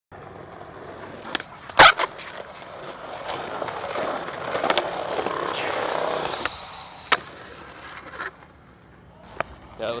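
Skateboard wheels rolling on rough concrete, growing louder as the board nears and fading away after about eight seconds. Sharp clacks of the board striking the concrete stand out, the loudest about two seconds in and another about seven seconds in. A laugh comes at the very end.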